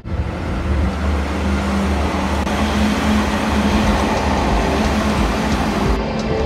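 Road vehicle driving along a street, heard from inside: a steady low engine rumble and hum under road noise.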